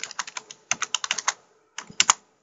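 Typing on a computer keyboard: a quick run of key clicks through the first second or so, then a short pause and a couple more keystrokes near the end.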